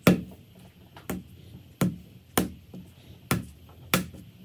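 Soft clay slapped down onto a stone-topped work table six times, sharp thuds at an uneven pace, a little under a second apart, as a mug-handle blank is shaped by hand.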